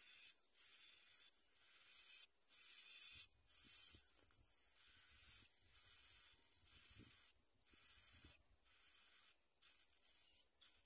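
Bar-winged prinia nestlings begging at the nest: high, thin hissing calls in bouts about a second long, with short breaks between them.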